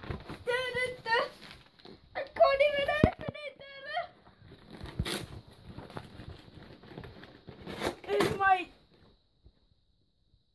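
Children's voices, with the rustle and tearing of a cardboard parcel box and its paper packing being opened by hand, and two sharp knocks about three and five seconds in.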